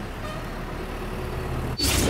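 A steady low rumbling noise with a faint low hum, then a sudden loud whoosh near the end.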